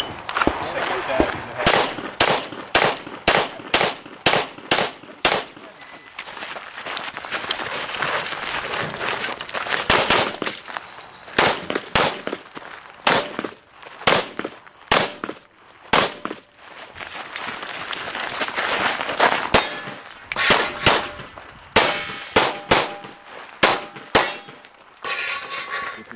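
Gen 3 Glock 34 9mm pistol fired over and over through a practical-shooting stage: quick pairs and runs of shots, with short gaps between groups.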